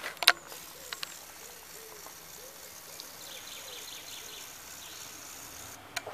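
Quiet outdoor background: a soft steady hiss with faint bird calls, after a single sharp click near the start.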